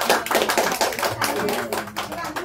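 Applause from a small congregation: many hands clapping, irregular and close together.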